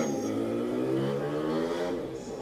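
An engine droning, its pitch rising slowly and evenly.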